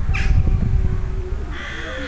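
A crow cawing twice: a short harsh call just after the start and a longer one near the end.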